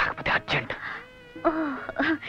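Film dialogue in Telugu. Midway through, a short, steady, high-pitched held tone breaks in before the talking resumes.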